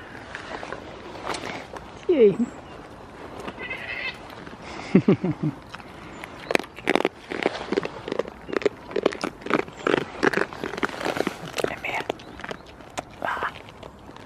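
A goat gives a short, falling bleat about two seconds in. From about six seconds on come quick, crisp crunching clicks as the goats chew treats from the hand close up.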